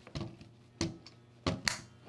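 A handful of sharp plastic-and-metal clicks as a backplate adapter is slid onto the rear of a CZ Scorpion receiver with its rear button held down, the loudest clicks about a second and a half in.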